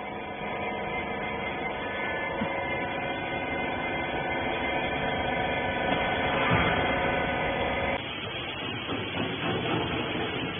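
Rag baler's hydraulic power unit running with a steady hum and whine. About eight seconds in it gives way to quieter workshop noise with a few light knocks.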